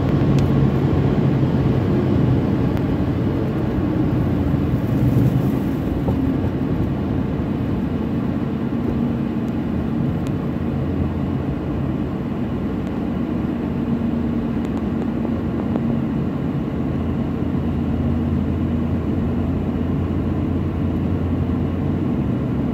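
Steady road and engine noise of a moving vehicle, heard from inside its cabin: a low rumble of tyres and engine with faint held engine tones.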